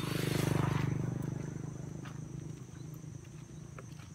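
Small motorcycle engine passing on the road, loudest in the first second and then fading away.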